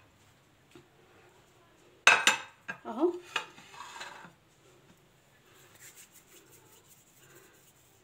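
A plate clattering and clinking, set down with a few knocks in quick succession about two seconds in, then faint light tapping and rubbing near the end.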